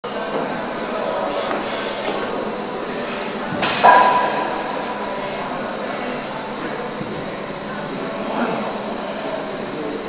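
Steady gym background noise with indistinct voices, and about four seconds in a single sharp metallic clank of gym weights that rings on for a second or so.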